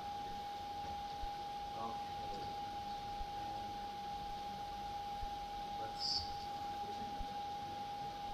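Audio feedback: a steady whistling tone held on one pitch, from the room's sound system picking up a Teams call left with its speakers on, the echo loop the presenter warns about. Faint voices murmur underneath.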